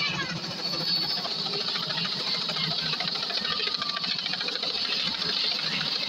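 Light helicopter flying overhead: its two-bladed rotor and engine give a steady, rapid beat.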